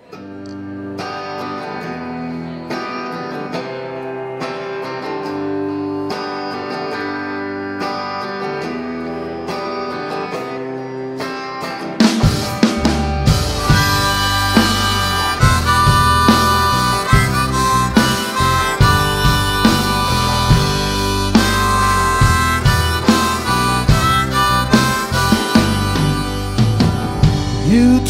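Live rock band playing an instrumental intro: harmonica over guitar for about twelve seconds, then the drums and the full band come in with a steady driving beat.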